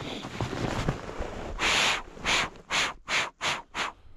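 Boots crunching through snow: after a stretch of fainter rustling, a run of about seven quick, regular steps from a little before halfway in.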